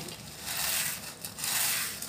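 Crackling and scraping of ingredients being worked into a pot of mutton curry, in two swells about a second apart.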